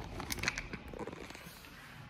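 Handling noise from a camera being taken off its tripod and carried by hand: a few light clicks and rubbing on the microphone, mostly in the first second.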